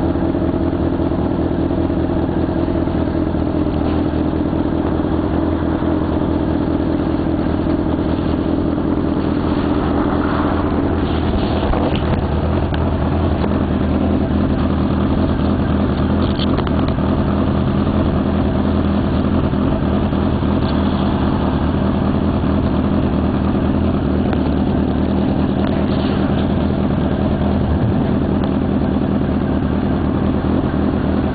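Motorcycle engine running at a steady speed, a continuous drone that holds its pitch, easing to a slightly different note about twelve seconds in.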